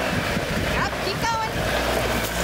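Wind rushing on the microphone over a vehicle engine running underneath, with brief indistinct voices around the middle.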